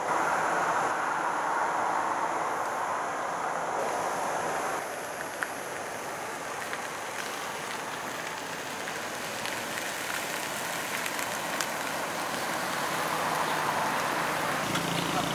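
Steady road traffic noise, a continuous hiss that eases a little about five seconds in.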